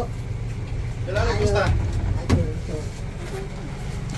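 A steady low hum throughout, with one short spoken word about a second in and a single sharp click a little past the middle.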